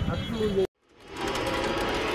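A man's voice cut off abruptly less than a second in, then after a brief gap a news-channel ident sting swells in as a dense whooshing wash of sound.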